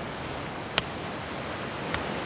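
Two sharp knocks, the first louder, a little over a second apart, as a hand-held rock strikes an in-shell macadamia nut resting on another rock, over the steady hiss of ocean surf.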